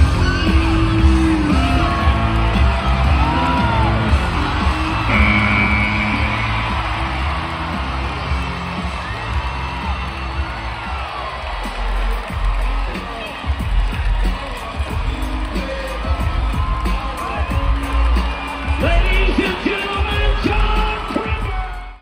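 Pop music played loud over an arena's sound system, with whoops and yells from the crowd.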